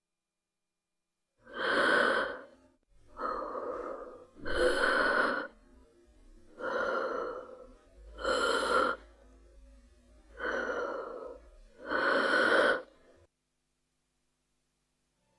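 A person breathing heavily in and out, seven slow breaths about a second each, alternately louder and softer, with short gaps between them.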